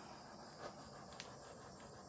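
Small handheld gas torch hissing faintly as its flame is played over wet acrylic paint on a canvas, with a faint click just over a second in.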